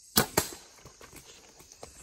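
Compound bow shot at a doe about 20 yards off: a sharp crack as the string is released, then a second sharp smack a fifth of a second later as the arrow strikes the deer. Faint scattered crackles follow as the hit deer runs off through the brush.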